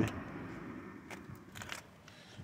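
A few faint, short clicks and light rustles, bunched about one to two seconds in.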